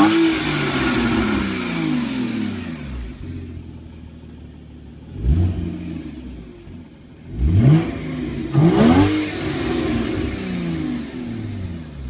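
2013 Porsche Cayman's 2.7-litre flat-six being revved while stationary. The revs fall back to idle, a short blip comes about five seconds in, then two sharper revs follow near eight and nine seconds in, each dropping back toward idle.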